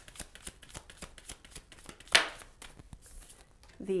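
Tarot cards being shuffled by hand, with many small clicks of card against card and one sharp, louder snap of the cards about two seconds in. A card is slid from the deck and laid on the table near the end.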